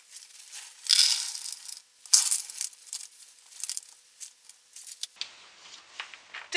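Rose hips poured from a cloth bag into a bowl: a rattling clatter of small hard fruits in two main rushes, about one and two seconds in, then lighter scattered ticks as the last few drop.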